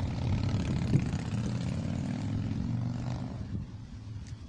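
Steady drone of a passing engine, fading out near the end.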